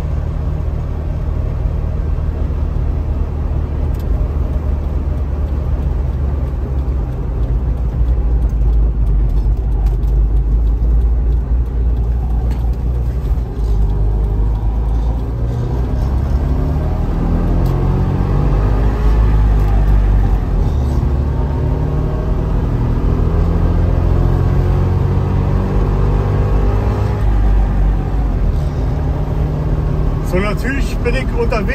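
Trabant 601's two-cylinder two-stroke engine heard from inside the cabin while driving, with road noise underneath. In the second half the engine's pitch climbs and falls several times as it speeds up and slows.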